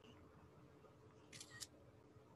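Faint camera-shutter click of a screenshot being taken, a quick double click about a second and a half in, over near silence with a low steady hum.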